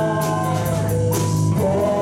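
A rock band playing live: a sung vocal line over electric guitar, bass guitar and drum kit, with steady cymbal strokes.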